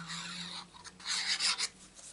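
Stiff card stock rubbing and scraping under the hands, two rasping scrapes about a second apart.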